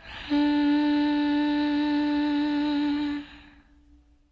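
A female voice holds one long sung note with a slight waver, closing out a pop ballad, then fades away to silence near the end.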